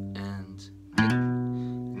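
Steel-string acoustic guitar playing single notes: a low G rings and fades, then about a second in the open A string is picked and quickly hammered on to B. The A is cut short, the rushed timing that beginners typically play.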